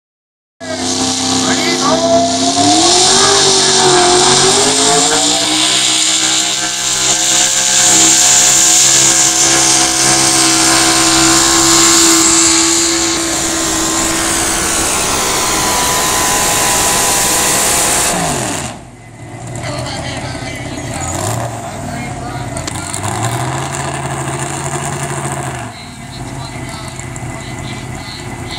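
Single-engine modified pulling tractor under full power hauling a weight-transfer sled: the engine climbs in pitch over the first few seconds, then holds a loud, steady high pitch. About two-thirds of the way through it drops off suddenly to a much quieter running sound with a couple of short revs.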